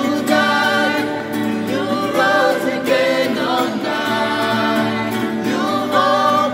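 A small group of male and female voices singing a worship song in harmony, accompanied by a strummed acoustic guitar.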